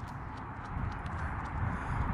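Faint footfalls of sprinters running away on a rubber track, over a steady low rumble of wind on the microphone.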